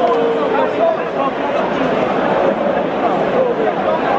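Football stadium crowd in the stands: a steady, dense babble of many voices talking and calling out at once.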